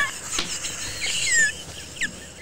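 A man and a woman laughing together, breathy with high-pitched squeals.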